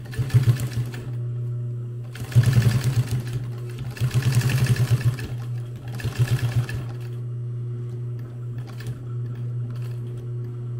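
Industrial sewing machine stitching through layered nylon webbing and Cordura in four short runs of rapid, even needle chatter. Its motor hums steadily and keeps running between the runs.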